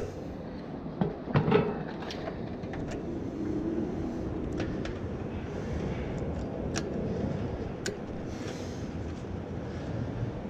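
A couple of knocks about a second in, then scattered light clicks, from hands handling metal parts of an air-conditioner condenser, over a steady low rumble.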